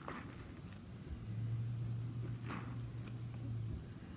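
A block of clay pressed down against a tabletop while being wedged, giving two soft thuds about two and a half seconds apart. A low steady hum runs under it from about a second in until just before the end.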